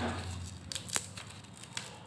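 Fingers handling garlic cloves and coarse salt on a stainless steel plate: small crisp clicks and crackles, with the sharpest tick about a second in.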